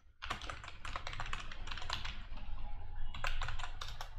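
Typing on a computer keyboard: a quick, continuous run of key clicks.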